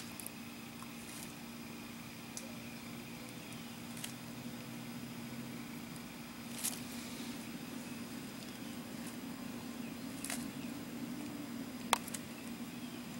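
Steady low mechanical hum with a few short, faint clicks scattered through it.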